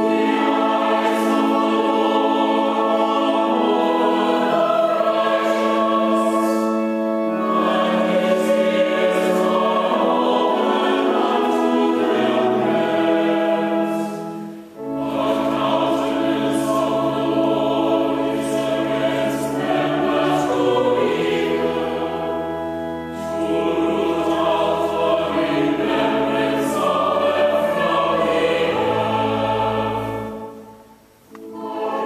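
Mixed church choir singing a psalm to Anglican chant with organ: two verses of held chords moving to a cadence, with a short breath between them about halfway through.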